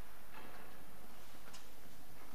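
Footsteps on a hard floor picked up by a lectern microphone: a soft step, then a sharp click about a second later, over a steady background hiss.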